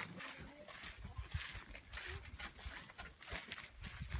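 Footsteps on a gravelly dirt path: irregular, quiet scuffing steps of several people walking.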